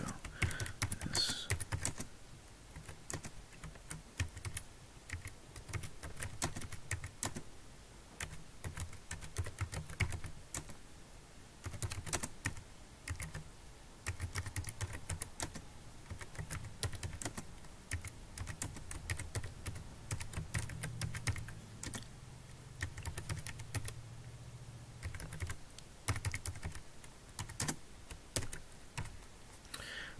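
Typing on a computer keyboard: a long run of irregular keystrokes in bursts with short pauses between words.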